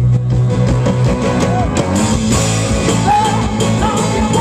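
Live soul-rock band playing loudly: drum kit, bass guitar and electric guitars, with the bass holding one low note at the start. A wavering female vocal line comes in about three seconds in.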